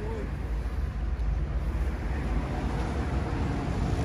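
A steady low rumble of vehicle noise with no distinct events.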